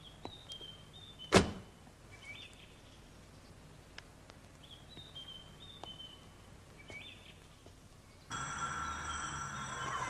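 Faint bird calls, short chirps every second or two, with one sharp knock about a second and a half in. Near the end the sound changes abruptly to a louder steady bed with held tones.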